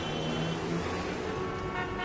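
End-card logo sting: a steady, dense sound effect with several held tones, and a new set of higher held tones coming in near the end.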